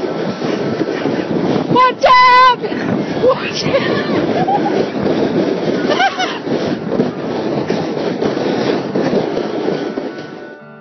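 Wind rushing over the microphone throughout, with a loud, high-pitched shout held for about half a second about two seconds in, and a few shorter calls from people in the snow later on.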